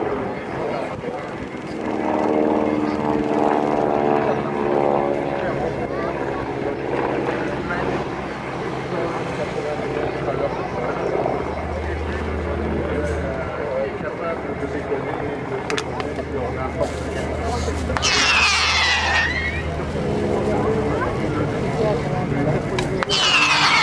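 A propeller-driven light aircraft flies past with its piston engine droning steadily. A short, sharp burst of noise comes near the end.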